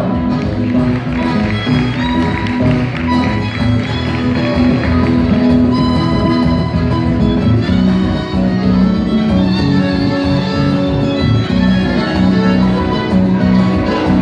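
Live band playing an instrumental: a violin carrying long held notes over guitar and a drum kit keeping a steady beat.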